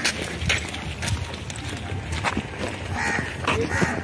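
Footsteps of several people walking on a gravelly dirt road, with a few short animal calls near the end.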